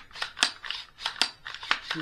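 AR-9 pistol being racked by hand: the charging handle and bolt slide back and forth with a quick series of sharp metallic clicks and clacks. The bolt now cycles freely instead of catching, after the channel it was hitting was widened with a Dremel.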